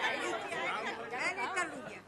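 Audience chatter: several voices talking at once, none standing out, in a large room.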